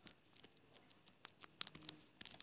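Faint, irregular light clicks and scratches of a stylus tip on a tablet as handwriting is written, over a quiet background. The clicks are thickest in the second half.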